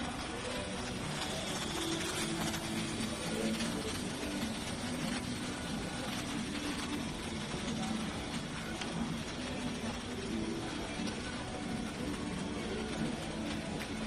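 Steady indoor shop ambience: a constant wash of noise with indistinct background voices, and a loaded shopping cart rolling along the floor.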